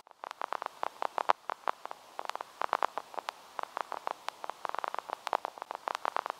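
Irregular crackling clicks, several a second, over a faint hiss.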